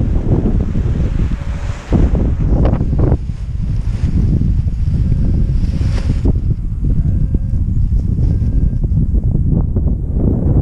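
Wind buffeting the microphone: a loud, steady low rumble, with a higher rushing hiss from about one and a half to six seconds in.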